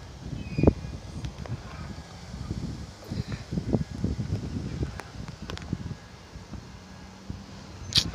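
Handling and wind noise on a handheld phone microphone: irregular low thumps and rumble, the sharpest thump a little under a second in.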